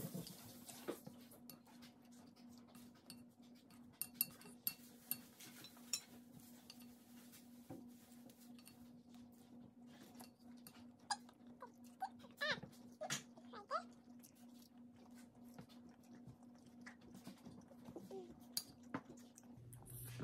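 Faint sounds of eating at a table: scattered light clicks of a utensil on plates and chewing, over a faint steady hum. A few brief faint pitched sounds come in the middle and near the end.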